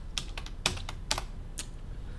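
Computer keyboard keys being pressed while entering a login password: about six separate, fairly quiet key clicks spread over two seconds.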